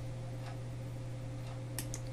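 Steady low electrical hum in the background, with a few quick computer mouse clicks near the end as a file is picked.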